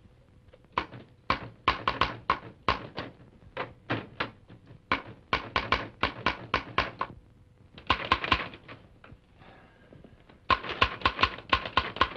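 Manual typewriter typing: quick runs of sharp keystrokes, about five or six a second, broken by short pauses.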